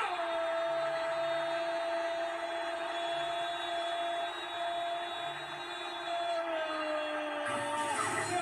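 A Spanish-language TV commentator's long held goal cry, "¡Gooool!", kept on one steady pitch and sliding slightly lower near the end, heard through a television speaker.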